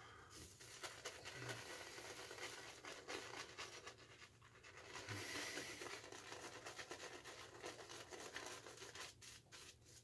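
Badger-hair shaving brush scrubbing shaving soap lather onto a stubbled face: a faint, continuous run of quick scratchy, wet swishing strokes. The knot is holding too much water, so the lather is wet and spattering.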